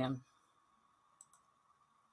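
A woman's voice trailing off, then near silence with a faint steady hum and two faint clicks in quick succession about a second in.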